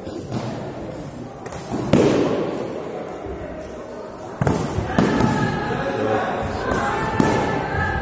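Training swords striking padded shields in a sparring bout: several sharp thuds, the loudest about two seconds in and others near four and a half, five and seven seconds, echoing in a large gym hall. Voices shout over the later blows.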